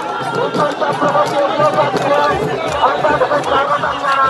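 Dense crowd chatter: many voices talking and calling out over one another in a street crowd. A low, pulsing beat joins about two seconds in.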